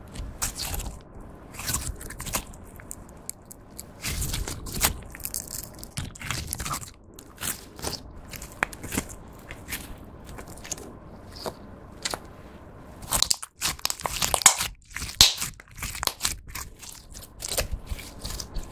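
Hands squeezing, stretching and folding clear slime coloured pearly pink: an irregular run of squishing and clicking sounds, loudest and densest about thirteen to fifteen seconds in.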